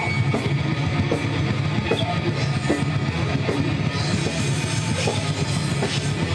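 A live rock band playing loud and heavy, with electric guitar over a drum kit and regular drum hits.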